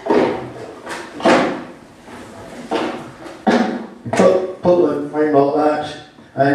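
A man's voice in a reverberant hall, speaking indistinctly in the second half, after several short sharp sounds in the first half.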